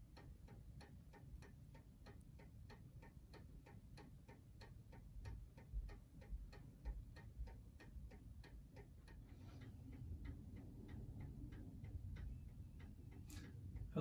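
Wooden mantel clock ticking faintly in a steady, even rhythm over a low room rumble.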